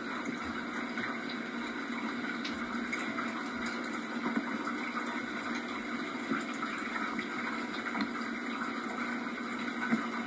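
Steady rushing hiss of an old camcorder tape's background noise, with a few faint ticks.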